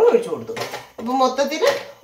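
A woman speaking, in two short stretches with a brief pause about a second in.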